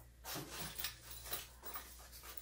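Faint handling sounds: a few small, irregular clicks and rustles as metal key rings are worked off the zipper pulls of a nylon fanny pack.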